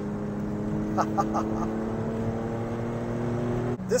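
Porsche 911 Carrera's flat-six engine heard from inside the cabin, pulling steadily with its note climbing slowly. Near the end the note drops abruptly.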